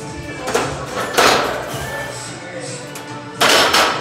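Gym background music, with two loud, short rushing breaths, one about a second in and one near the end: a lifter breathing hard to brace as he sets up under a loaded barbell for a squat.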